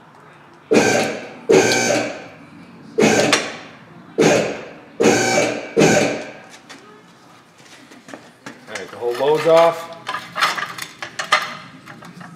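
A vehicle lift's power unit is bumped on in six short bursts, each starting abruptly and winding down, as the rack is raised a little at a time. Later comes a brief creak with a bending pitch and a few clicks.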